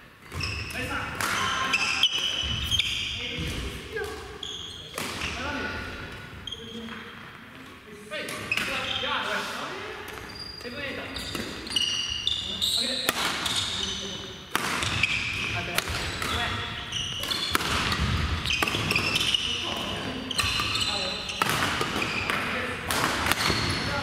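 Badminton rallies on several courts in a gym: repeated sharp racket hits on shuttlecocks, short shoe squeaks on the wooden floor, and players' voices.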